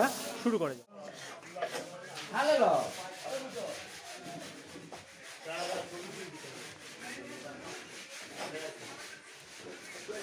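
A steady rubbing, scraping noise with faint, indistinct voices behind it, broken by a brief drop-out about a second in.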